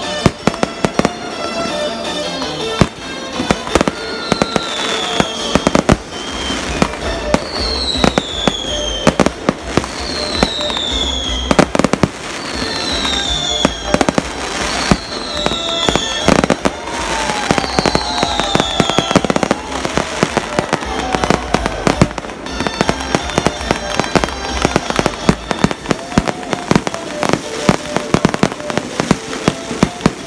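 A fireworks display: shells bursting in repeated sharp bangs with dense crackling throughout. From about four to nineteen seconds in, a string of high falling whistles sounds roughly every couple of seconds.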